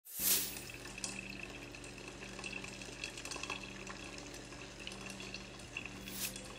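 A BUNN drip coffee maker brewing: coffee trickling and dripping into its glass carafe with small crackles, over a steady low electrical hum. A brief loud hiss comes right at the start.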